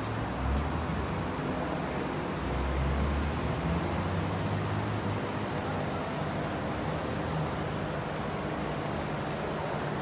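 Steady indoor background noise with a low hum, and a deeper rumble from about two and a half to five seconds in.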